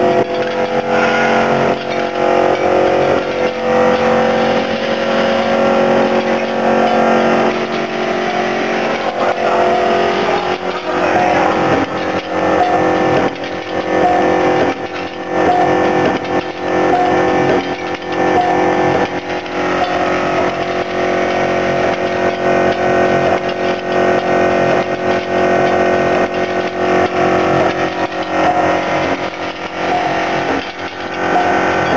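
Screw counting and packaging machine running: a steady mechanical hum with many short clicks and knocks from the working cycle.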